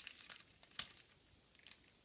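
Faint rustling and a few light clicks of paper and plastic stationery being handled and sorted through, with a sharper click a little under a second in.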